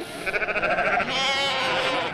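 Sheep bleating: two long, quavering bleats one after the other.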